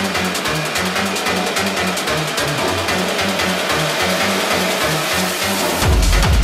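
Hard techno played loud over a festival sound system: a fast pulsing bassline and busy hi-hats with the deep kick and sub-bass filtered back. Near the end, the heavy kick and sub-bass come back in.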